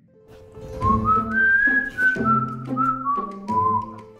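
Background music: a whistled tune, starting about a second in, that climbs and then steps back down over a light instrumental accompaniment.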